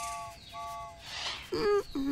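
Cartoon 'wrong answer' sound effect: two short identical beeps in quick succession, marking the guess as incorrect. A brief voice-like sound follows near the end.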